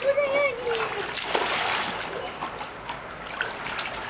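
Water splashing in an inflatable paddling pool as small children play in it, after a short, falling call from a child in the first second.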